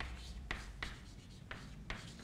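Chalk writing on a chalkboard: a handful of short taps and scratches, about five in two seconds, over a faint low hum.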